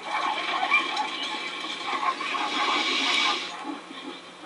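Film soundtrack from a television: a loud rushing, hissing noise that sets in suddenly and dies away about three and a half seconds in, over a faint steady hum.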